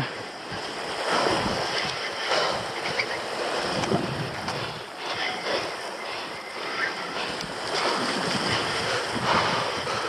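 Sea waves washing against the rocky shoreline, swelling and easing every second or two, with wind buffeting the microphone.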